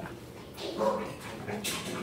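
A dog making a couple of soft, brief vocal sounds, with a short breathy burst near the end.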